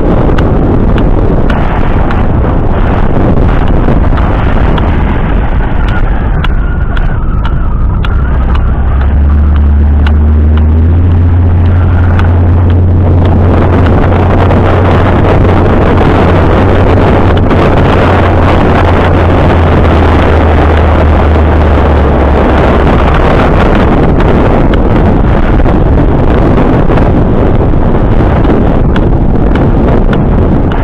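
Wind and road noise inside a moving pickup truck's cab with the sunroof open, the air rushing over the roof rack. A deep rumble grows much louder from about nine seconds in and eases off about twenty-two seconds in, with scattered faint clicks throughout.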